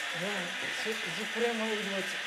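People talking quietly over a steady background hiss.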